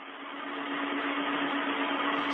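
Hiss of an open space-to-ground radio channel with a steady low hum, cut off above the middle pitches like a communications link. It comes on suddenly and grows gradually louder.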